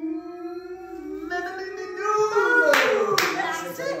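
A woman's voice holding one long sung note that rises slowly, then two loud hand claps about half a second apart near the end.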